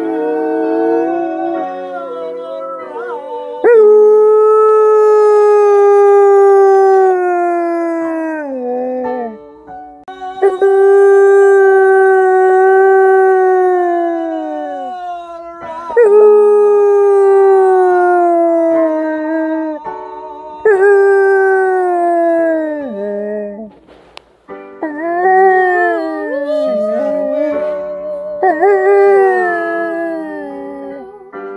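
German Shepherd howling along to piano music: a series of long howls, each held for several seconds and sagging in pitch as it dies away.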